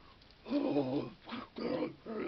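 A man's wordless vocal sounds: three short pitched cries or hoots, the first the longest and loudest.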